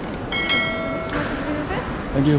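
A short ringing tone with several pitches sounding together. It starts sharply about a third of a second in and dies away within about a second, over faint voices.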